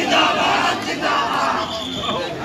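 Large crowd shouting together, many voices overlapping, loudest just after the start.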